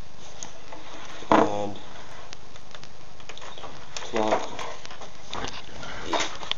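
A man's voice in two short wordless sounds, the louder about a second and a half in and a softer one about four seconds in, over a steady background hiss.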